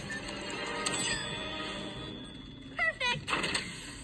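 Cartoon soundtrack from a TV speaker: background music with sound effects, and a short loud burst of sliding, voice-like tones about three seconds in.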